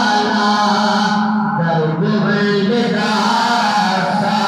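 A group of boys chanting a naat together in unison without instruments, their voices moving in long held notes.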